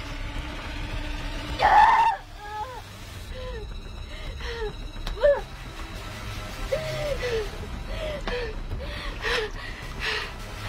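A woman straining and whimpering as she tries to climb an earth wall: a loud cry about two seconds in, then short effortful grunts and whimpers about every half second. There is a sharp knock midway, and scrapes near the end as she drops back down.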